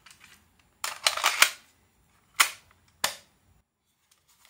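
Clicks and clatter from handling a Sony portable cassette player: a burst of rattling clicks about a second in, then two single sharp snaps as its cassette door is shut.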